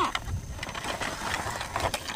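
Cardboard and clear plastic packaging rustling and scraping against gritty sand as a toy box is opened and its plastic tray pulled out, with a few short crackles.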